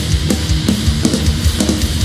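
Live rock band playing loud: heavily distorted electric guitars and bass over drums, with regular drum and cymbal hits.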